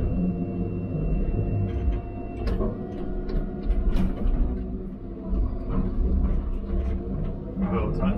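Diesel engine of a tracked forestry machine working under load, heard from inside its cab, its note shifting as the boom and grapple swing, with sharp knocks about two and a half and four seconds in.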